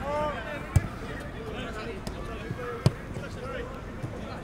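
Two sharp thumps of a football being kicked, about two seconds apart, with voices calling in the background.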